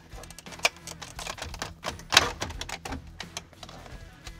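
Plastic clicks and knocks as a wiring connector is squeezed and unplugged from a Chevy Silverado instrument cluster and the cluster is worked out of the dashboard, the sharpest click about two seconds in.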